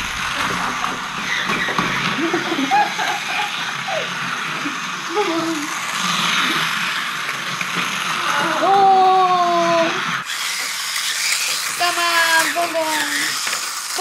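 Small electric motor of a toy bullet train whirring, with its wheels rattling on plastic roller-coaster track, as it stalls partway up a vertical loop. A child's drawn-out voice comes in twice, in the second half.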